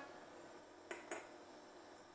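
Near silence: the faint steady hum of an induction hob and its cooling fan, with two faint clicks about a second in.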